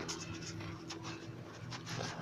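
Scratchy rustling and handling noise from a handheld phone being moved about, a few short scrapes over a faint steady low hum.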